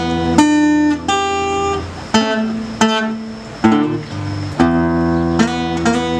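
Solo acoustic guitar playing a blues instrumental passage: sharply picked single-note phrases that ring on, over a sustained low bass note, with no singing.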